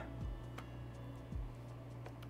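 Quiet lo-fi background music: a steady low bass line with a soft kick drum about once a second and a few light ticks.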